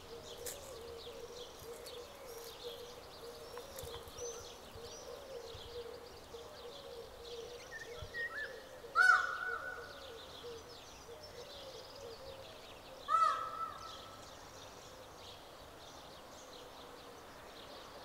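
Small birds chirping throughout, with two loud, harsh farm-bird calls, one about halfway through and one about three-quarters of the way through.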